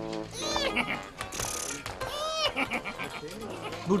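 A goat bleating twice, each call an arching wavering cry, with faint music underneath.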